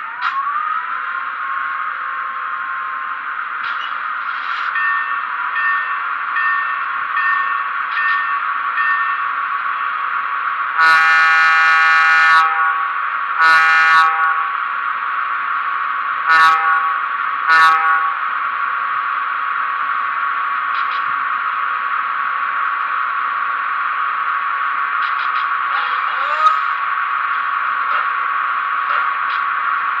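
Econami DCC sound decoder in an HO scale OMI box cab electric switcher powering up: a whine rises in pitch over the first second and settles into a steady electric hum, recorded too loud from the bass speaker. About eleven seconds in, the horn sounds one long blast and then three short ones, and a sharp click comes near the end.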